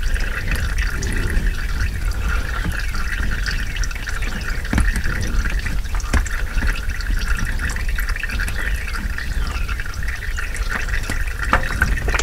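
Used engine oil streaming steadily into a drain bucket, a continuous filling sound with a few faint clicks, as the old oil drains from the engine and the loosened oil filter.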